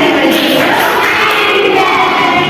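A group of young children chanting loudly together in unison, many voices overlapping.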